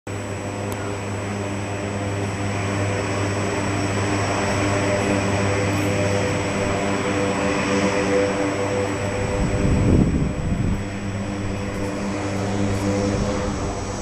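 Lockheed Martin KC-130J Hercules tanker's four turboprop engines running as the aircraft rolls along the ground: a steady propeller drone with several steady humming tones. About ten seconds in there is a brief louder low rumble.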